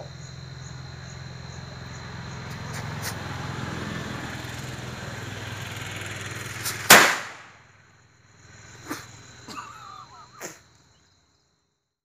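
A small firecracker held in a man's mouth: its lit fuse hisses for several seconds, then the cracker goes off with one loud, sharp bang about seven seconds in. A few fainter sharp cracks follow, over crickets chirping steadily.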